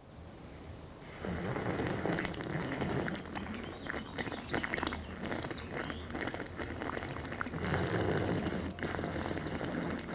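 A person slurping a drink noisily and at length from a mug. It starts about a second in and goes on with short breaks.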